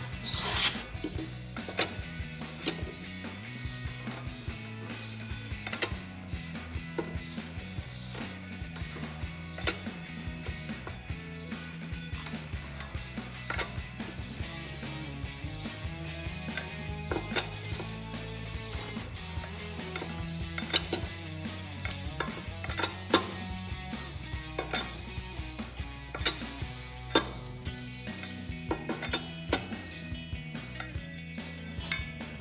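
Background music with a steady low bass line, over scattered sharp metallic clicks and clinks of a wrench and socket working chrome lug nuts as they are tightened onto the wheel.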